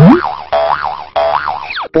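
Cartoon boing sound effects for an animated logo sting: a springy, wobbling tone that bounces up and down in pitch three times. It opens with a rising swoop and ends with a quick falling slide.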